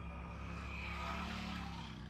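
A small motorcycle engine running close by as it rides past, its drone swelling to a peak about a second in and then easing off.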